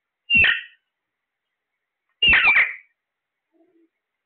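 Alexandrine parakeets calling: two short loud calls about two seconds apart, the second a little longer.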